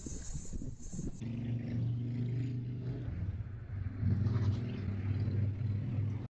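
Vehicle engine running close by with a steady low hum that gets louder about four seconds in. Before it, for about the first second, there is a hiss with scattered knocks.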